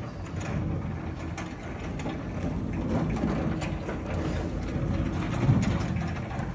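Small caster wheels of a wheeled lectern rolling across a hard floor: a steady low rumble with many small clicks and rattles.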